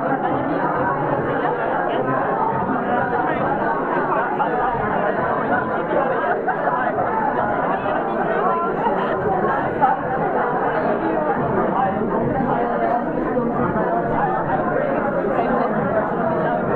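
Crowd chatter: many people talking at once in a steady, dense hubbub, with no single voice standing out.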